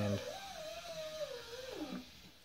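A single thin wavering tone like a soft whistle, held for about a second and a half, then sliding down in pitch near the end.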